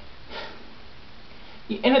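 A short sniff, a quick breath in through the nose, in a pause in speech, over low room tone; a woman's voice starts again near the end.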